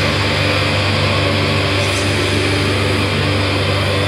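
Metal music: distorted guitars hold a steady, droning passage with no drum hits.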